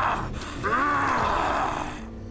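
A long vocal cry from a cartoon character, arching up and then down in pitch, over a steady rushing noise.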